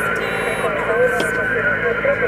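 Amateur radio transceiver's loudspeaker receiving on the 40-metre band in single sideband: a narrow, tinny band of hiss with a steady whistle and warbling, garbled voices of other stations.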